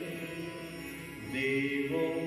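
A man chanting a devotional verse in long held notes, amplified through a microphone. His melody moves to a new note about two-thirds of the way through.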